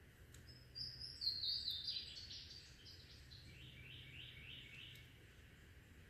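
A songbird singing in woodland: a bright run of notes sliding down in pitch, then about five short, quick downslurred notes, over faint steady background noise.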